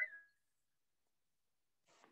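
Near silence: a woman's voice trails off in the first moment, then dead quiet, with a faint brief noise just before the end.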